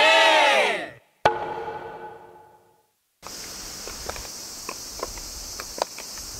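A group of voices gives a rising-then-falling shout that ends about a second in, followed by a single hollow 'kōn' knock of a wooden onsen bath bucket that rings out for about a second and a half. After a short silence comes a steady high hiss with a few light clicks of wooden geta sandals stepping on stone.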